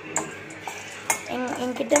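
Metal spoon stirring peanuts roasting in a steel wok, with scattered clicks and scrapes of spoon and nuts against the pan.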